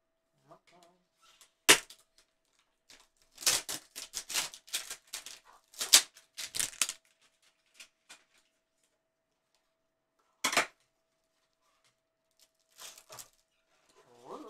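Handling noise from gloved hands working a cardboard trading-card hanger box and a plastic card holder: sharp clicks and taps, one loud snap about two seconds in, a quick run of them a few seconds later, then a few more spaced out near the end.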